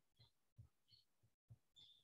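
Near silence: room tone with a couple of very faint soft low thumps.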